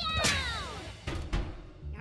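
Cartoon music sting with a cat-like cry falling in pitch, followed by a few short knocks about a second in.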